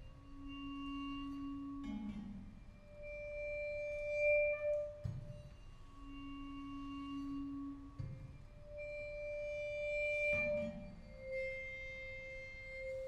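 Vibraphone bars bowed with a bass bow, giving pure sustained notes that alternate between a lower and a higher pitch. Each note is held for about two seconds and then stops. Soft low knocks fall between the notes.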